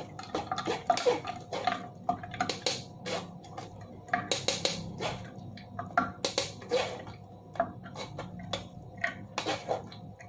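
Metal spoon scraping and clinking against a stainless-steel mesh strainer as blended spinach pulp is pressed through it. The scrapes and clinks come irregularly throughout, some with a short metallic ring.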